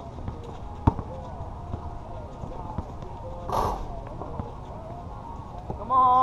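A basketball dribbled on an outdoor asphalt court: sharp bounces at the start and about a second in, then fainter knocks. Near the end a player shouts.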